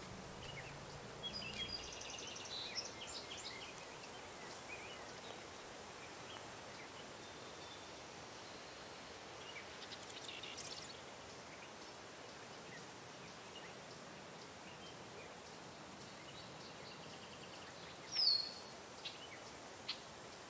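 Faint outdoor ambience with scattered bird chirps, and one louder, falling call near the end.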